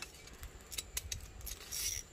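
Metal kitchen tongs clicking several times as they grip and lift a grilled fish, with a short scrape near the end.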